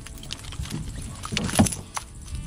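A few dull thumps and knocks as a small redfish is handled in a landing net against the side of a jon boat. The loudest thump comes about a second and a half in.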